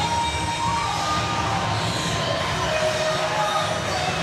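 Wrestler's entrance music playing over a cheering, shouting crowd.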